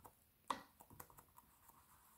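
Faint dabbing of a paint-loaded sponge on a stretched canvas as acrylic paint is spread around. There is one slightly sharper dab about half a second in, then soft scattered taps.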